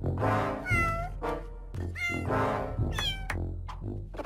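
Three short, meow-like cries in cartoon cat voices, each bending up and down in pitch, over background music.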